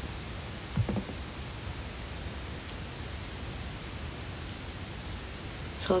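Steady hiss of a phone microphone's background noise in a small quiet room, with one soft low bump about a second in.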